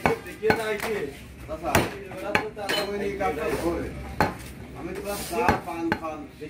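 Butcher's cleaver chopping goat meat on a wooden log chopping block: about eight sharp, irregularly spaced strikes, with people talking in the background.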